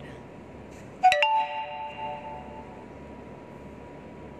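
A bright bell-like chime: two notes struck in quick succession about a second in, ringing on and fading away over about a second and a half.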